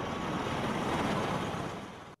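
Bell Boeing V-22 Osprey tiltrotor flying overhead: a steady rushing drone of its rotors and engines, fading gradually over the second half.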